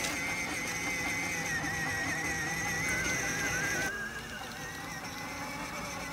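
Electric motor and gearbox of a battery-powered ride-on toy car whining steadily as it drives along, the high whine wavering slightly in pitch.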